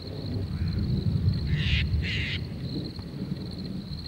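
A steady high-pitched cricket chorus over a low rumble that swells and fades. Two short, harsh bird calls come about one and a half and two seconds in.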